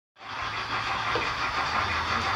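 Model steam locomotive approaching, its sound decoder and running gear giving a steady hiss over a low hum.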